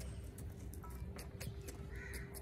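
A fat-tailed sheep's hooves stepping on dry, stony dirt in light, scattered clicks as it moves toward offered fodder, over a low steady rumble.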